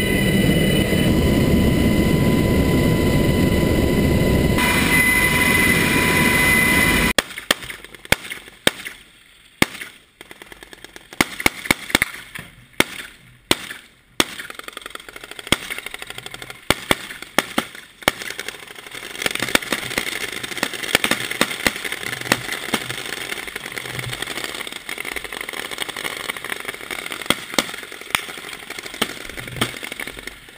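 Loud, steady helicopter cabin noise with a high whine for about seven seconds, then a sudden cut to many sharp gunshot cracks at irregular intervals over a quieter background.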